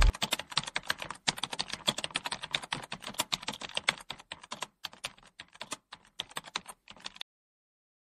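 Rapid, irregular clicking, several clicks a second, which stops about seven seconds in.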